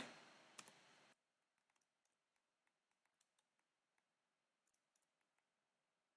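Near silence with faint, scattered computer mouse clicks, including one a little louder about half a second in.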